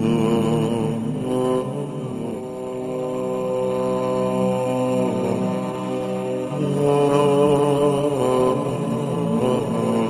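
A voice chanting in long, held, ornamented notes, with short breaks about two seconds in and again past the middle.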